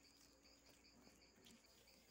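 Near silence: room tone with faint, steady, high-pitched insect chirping.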